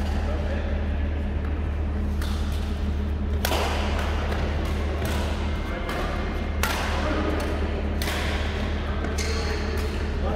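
Shuttlecock struck by badminton rackets in a doubles rally, about five hits a second or more apart, each ringing on in the echo of a large hall. A steady low hum runs underneath.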